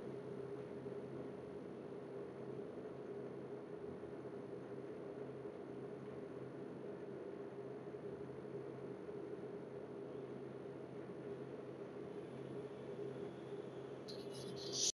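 Steady room tone: a faint, even hiss with a constant low hum.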